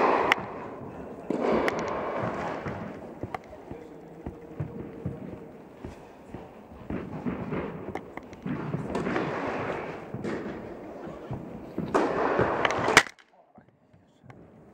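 Tennis balls being struck and bouncing in an indoor tennis hall: a handful of sharp, echoing cracks spaced a few seconds apart, with voices murmuring between them. The sound cuts off abruptly about a second before the end.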